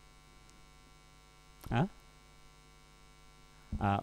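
Faint, steady electrical mains hum, broken by a single short spoken 'huh?' a little before halfway and a spoken 'uh' at the very end.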